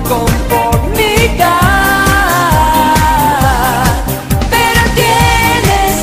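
Pop song: a singer holds long, wavering notes over a steady drum beat.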